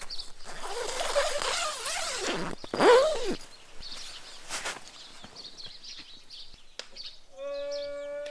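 Nylon tent fabric rustling and shifting as someone climbs out through the tent door, loudest about three seconds in. Near the end a rooster starts crowing, a long pitched call.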